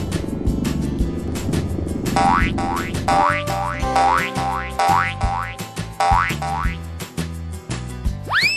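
Background music with a run of cartoon boing sound effects, each a quick rising sweep in pitch, about two a second starting about two seconds in, for bouncing animated balls.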